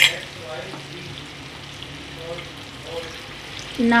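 Spiced onion-tomato masala frying in a pan with a steady sizzle as lentil paste is scraped into it from a steel bowl. There is a sharp clink of the spoon against the steel at the very start.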